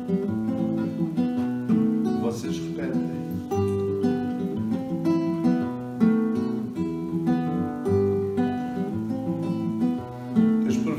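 Acoustic guitar strummed in a steady rhythm, moving through a sequence of chords.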